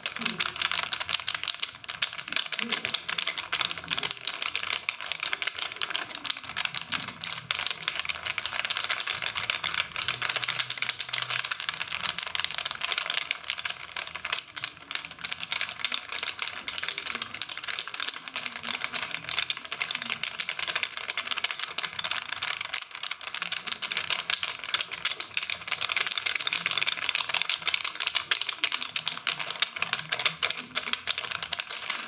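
Bamboo massage sticks clicking and tapping in a rapid, continuous patter as they work over the body.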